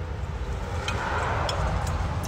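Iced drink sipped through a plastic straw from a lidded tumbler: a soft hissing suck about a second in, lasting under a second, with a few faint clicks. A low steady rumble runs underneath.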